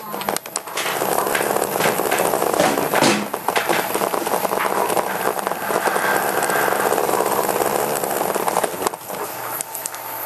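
Several small battery-powered vibrating bristle-bot toy bugs running on a tile floor: a dense, fast rattling buzz as they vibrate and clatter against the tiles, dropping off near the end.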